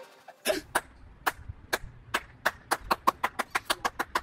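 One person's hand claps, slow at first and speeding up steadily, starting about half a second in.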